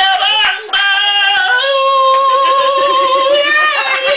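A man singing in a high voice: a few short notes, then one long held note with a slight waver from about a second and a half in.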